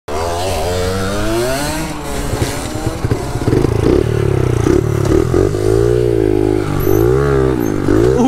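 Honda Monkey-style minibike with a 72cc four-stroke single-cylinder engine pulling away under throttle, the revs climbing and dropping several times as it gets going.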